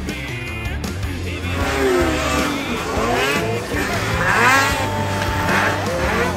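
Racing snowmobile engines revving, their pitch rising and falling again and again, with rock music underneath.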